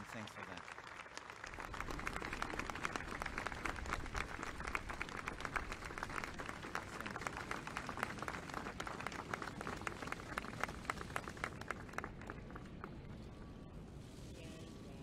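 Audience applauding, many hands clapping at once. The applause swells about two seconds in and dies away near the end.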